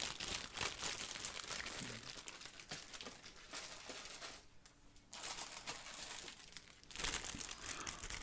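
Thin clear plastic bag crinkling and rustling as bagged plastic model-kit sprues are handled. There is a brief lull a little past halfway.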